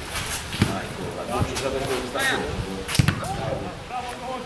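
A football being kicked on a grass pitch: three sharp thuds spread over a few seconds, with players' shouts faintly in between.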